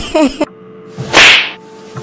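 A single loud blow sound effect about a second in: a short, sharp hiss-like crack lasting under half a second, standing for a whip or hand striking someone.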